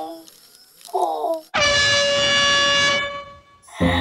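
Synthetic robot-voice sound effects: a short falling, warbling glide about a second in, then a loud, steady, horn-like tone held for about a second and a half.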